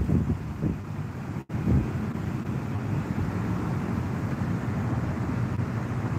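Wind noise on a phone microphone: a steady low rumble with no distinct events, cutting out for an instant about one and a half seconds in.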